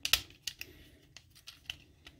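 Plastic parts of a Transformers Studio Series 86 Jazz action figure being handled and pressed together, giving a string of small irregular clicks as tabs are worked into their slots; the loudest click comes just after the start.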